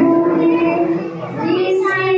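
A young girl singing solo into a microphone, holding a long note through about the first second before moving into the next phrase.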